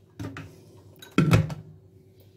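Two short knocks, the louder about a second in, as quartered tomatoes are put into the plastic bowl of a small electric chopper and its lid is handled; the motor is not running.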